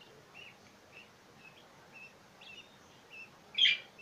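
Two-week-old lovebird chicks calling faintly in short peeps every half second or so, with one louder, raspy call near the end.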